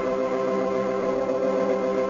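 Organ music holding a steady chord.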